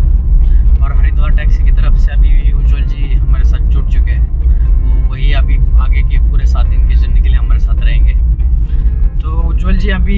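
Steady low rumble of a moving car heard from inside the cabin, with voices talking over it.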